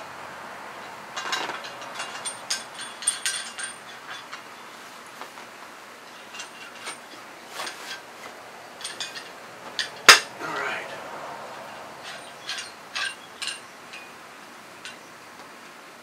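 Metal parts of a Crovel steel survival shovel being handled and worked: scattered clicks and rattles, with one sharp, loud click about ten seconds in.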